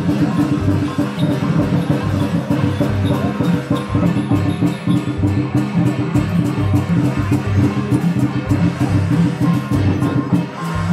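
Music with a steady, busy percussion beat over sustained pitched notes.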